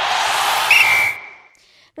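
Sound effect for an animated title graphic: a swelling whoosh of noise that cuts off about a second in, overlapped by a whistle blast that flicks up and then holds one steady high tone for about a second before fading.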